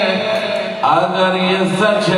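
A man's voice chanting Urdu verses in a sung, melodic recitation, holding long notes, with a new phrase starting just under a second in.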